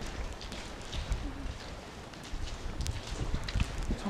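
Footsteps on damp, debris-strewn ground with irregular low thumps and a few sharp clicks, along with wind buffeting the camera microphone.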